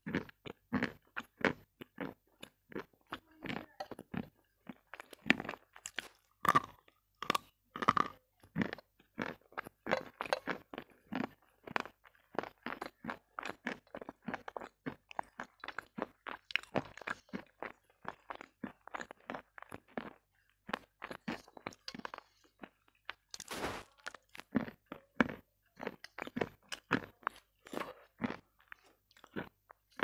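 A person chewing crunchy food right at a headset microphone: a steady run of sharp, close crunches, two or three a second, with one brief burst of noise about three-quarters of the way through.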